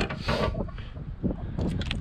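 A ratchet wrench and socket being handled and fitted together, with small metal clicks near the end. Wind rumbles on the microphone underneath.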